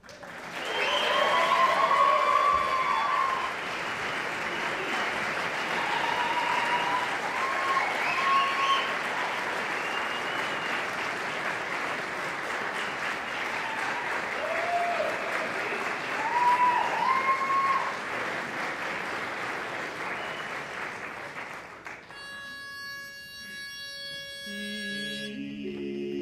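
Audience applauding with whoops and cheers for about twenty seconds after a barbershop quartet finishes a song. As the clapping dies away, a pitch pipe sounds a starting note and the quartet begins singing a cappella near the end.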